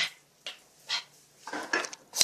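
Phone handled right at its microphone as it is picked up: several short scrapes and knocks, the busiest about three-quarters of the way through.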